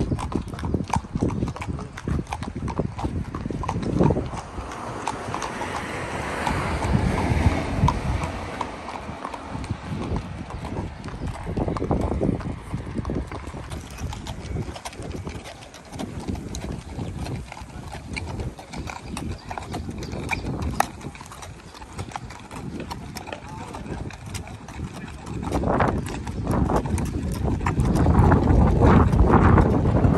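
Horses' hooves clip-clopping at a walk on a dirt track, a steady run of hoof strikes. A louder low rumble builds near the end.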